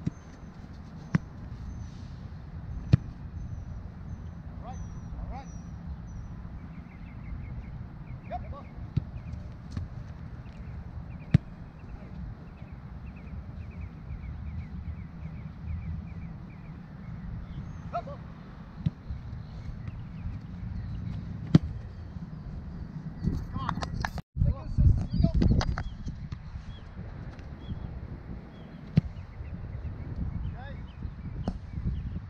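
Soccer ball being kicked back and forth in a passing drill, a sharp thud every few seconds, over a steady low background rumble. Faint bird chirps run through the first dozen seconds, and a louder jumble of noise comes about 24 seconds in.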